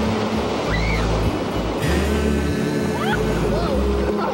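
Music with a steady bass line and held chords, with a few short gliding high notes, over a steady wash of breaking surf.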